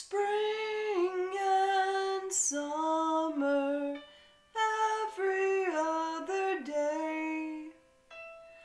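A woman singing a slow musical-theatre ballad close to the microphone, in two long phrases with a short pause between them about halfway, over a quiet accompaniment.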